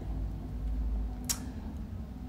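A pause between spoken phrases: steady low room hum, with one short click a little past halfway.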